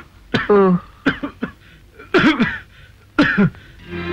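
A man coughing in about four short, harsh bursts, roughly a second apart.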